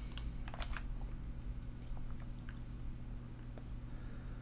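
Steady low electrical hum with a faint high whine above it, and a few soft scattered clicks.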